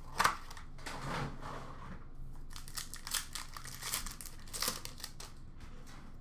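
Trading card pack wrappers crinkling and tearing as packs are opened, with cards rustling as they are pulled out; a string of short, irregular rustles and clicks, the sharpest about a quarter second in.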